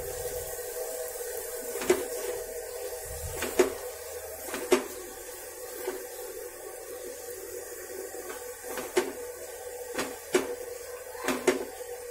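Paratha frying in desi ghee on an iron tava, with a steady low sizzle and scattered sharp clicks as a steel spoon taps and scrapes against the griddle.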